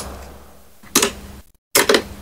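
Sharp plastic clicks of lighters being flicked, the first one lighting the flame, with a short fading hiss after it and a second click about a second in. Near the end a quick run of clicks as a plastic swing-top bin lid is pushed and swings.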